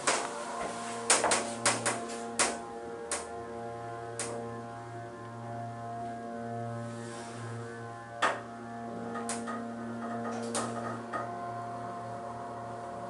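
Hydraulic elevator car travelling up: a steady, pitched hum from the running hydraulic drive. Scattered sharp clicks and knocks, most in the first few seconds and a few more near the end.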